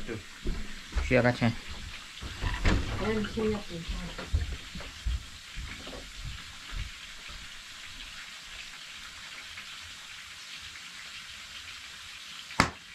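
Food frying in hot oil: a steady, crackling sizzle, with a few words spoken over it in the first few seconds.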